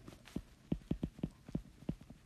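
Handwriting: a pen tip tapping and stroking on the writing surface, about a dozen short, quick taps as a word is written.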